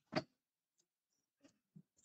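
A sharp click just after the start, then a few faint, scattered ticks and taps.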